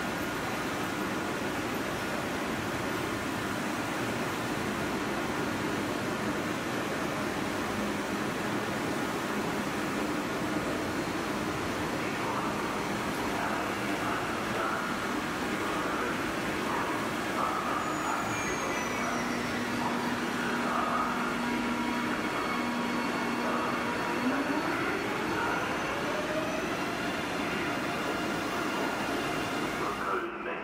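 Double-deck InterCity 2 train rolling along the platform track, a steady rumble and hiss of wheels on rail. A steady electric hum sets in past the middle, and over the last few seconds it turns into a whine rising in pitch, like electric traction motors speeding up.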